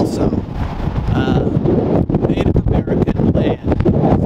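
Strong wind buffeting the microphone, a heavy steady rumble, with a few fragments of a man's voice breaking through.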